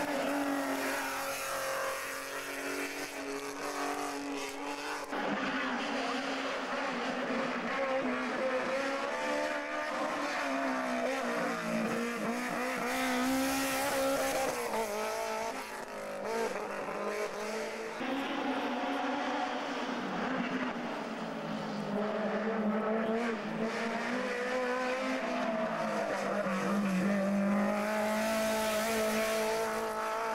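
Hillclimb race cars' engines revving hard as they climb one after another, the engine note rising and falling with each gear change and corner. The sound changes abruptly several times as one car gives way to the next.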